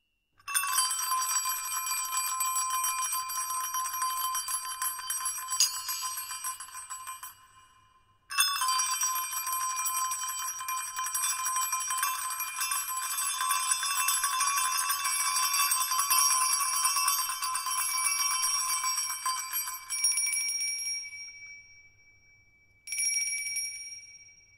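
Small metal bells and jingles rung in sustained jangling rolls of high ringing tones. The first roll breaks off about eight seconds in, a second one runs on and fades out, and a short final shake comes near the end.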